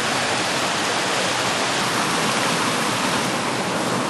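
Shallow mountain river rushing over a small rocky rapid: a steady, even rush of water.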